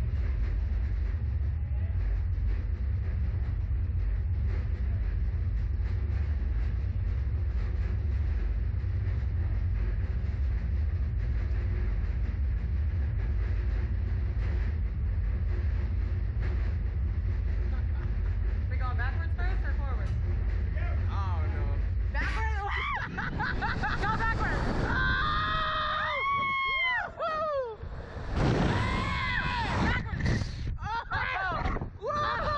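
A steady low hum from the slingshot ride's machinery while the capsule is held on the ground. The hum cuts off about three-quarters of the way through as the capsule is launched, and riders' screams and shrieks follow to the end.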